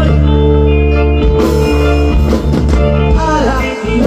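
Live band playing a song with electric guitars, keyboard and drums, holding a steady chord over a strong bass before the playing gets busier; a singer's voice comes in near the end.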